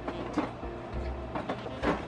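Background jazz music with held horn notes.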